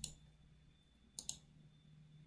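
Faint computer mouse clicks: one at the start, then two quick clicks just over a second in.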